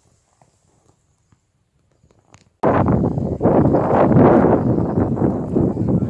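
Wind buffeting a phone's microphone, a loud, gusting rumble that starts abruptly about two and a half seconds in; before it, only a few faint soft ticks.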